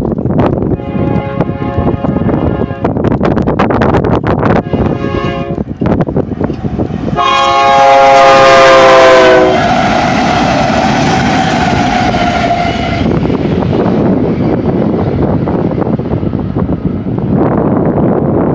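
Four BNSF GE diesel locomotives (ES44C4, AC4400CW, Dash 9) running light past at speed, with steady engine rumble and wheel noise throughout. The lead unit sounds its horn for the crossing: two blasts, then a long, loudest blast whose pitch drops as the lead engine passes, about halfway through.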